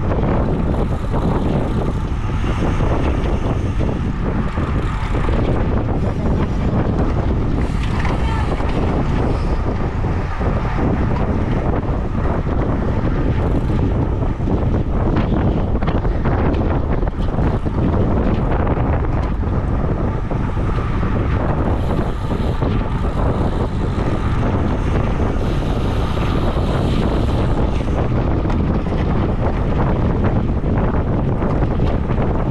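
Wind buffeting the microphone of a bicycle-mounted camera riding at about 22 to 24 mph in a road-race pack: a loud, steady rumble with no let-up.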